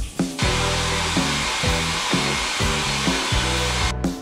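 Shower water spraying with a steady hiss, over background guitar music; the hiss starts about half a second in and cuts off abruptly just before the end.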